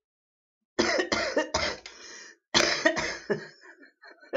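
A woman coughing hard after exhaling a sub-ohm vape hit: three quick coughs about a second in, then a second bout of coughs that trails off. The sub-ohm vapour sets off coughing like this every time she uses it.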